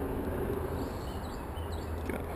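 Steady outdoor background noise with a few faint, short bird chirps.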